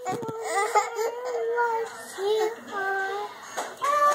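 A toddler crying, with a little girl's voice saying "awww" over him to comfort him.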